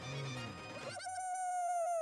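Comic background music whose busy texture gives way, about a second in, to one long, high held note that wavers and sags slightly in pitch, with a bleat-like quality.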